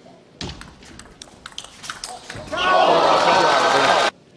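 Table tennis rally: a quick run of sharp clicks as the celluloid ball strikes bats and table, then a crowd cheering loudly about two and a half seconds in as the point is won, cut off abruptly.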